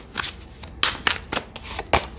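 Tarot cards being shuffled by hand: a handful of quick, irregular card slaps and riffles.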